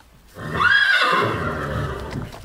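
A horse whinnying: one loud call that starts about half a second in, rising and then falling in pitch before trailing on.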